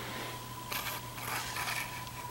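A jet aircraft passing overhead, heard faintly from indoors as a low, steady noise. Soft rustling cuts in briefly under a second in and again about a second and a half in.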